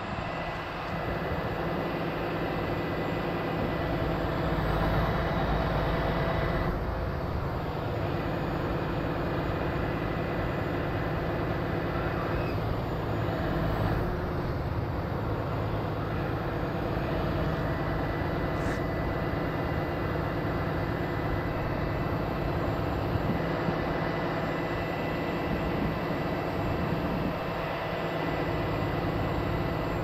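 Heavy rotator wrecker's diesel engine running steadily, powering the boom hydraulics as its winch lines lift a loaded trailer.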